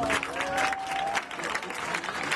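Clapping with scattered shouts at a flamenco performance, over a held note that fades out about halfway through.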